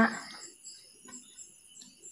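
Insects chirping faintly in the background, a steady high-pitched pulsing several times a second, with a couple of faint clicks.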